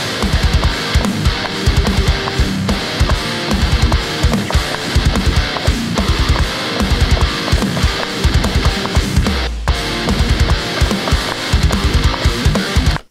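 Playback of a heavy metal riff demo: chugging distorted rhythm guitars from a Neural DSP Nano Cortex amp modeller, with bass and programmed drums in double time, snare on two and four. A brief stop about nine and a half seconds in.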